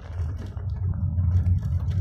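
Low, steady rumble of a car's engine and tyres heard from inside the cabin while driving.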